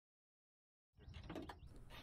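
Near silence: about a second of dead silence, then faint background noise.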